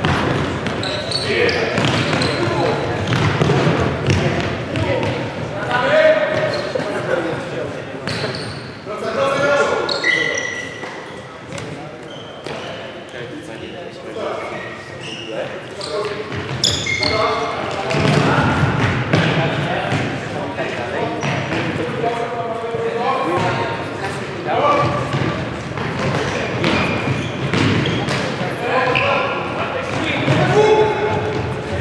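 Futsal players' shouts and calls in a large sports hall, with the ball being kicked and bouncing on the wooden floor at intervals.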